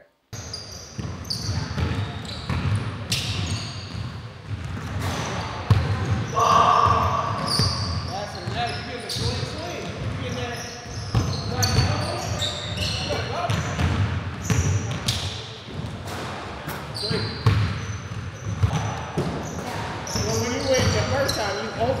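A basketball bouncing and being dribbled on a hardwood gym floor, with irregular knocks that echo in the large hall. Short high squeaks, like shoe soles on the court, come in among them.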